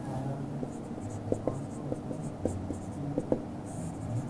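A marker pen writing on a whiteboard: light, irregular taps and strokes as the letters are drawn, about ten small ticks in all.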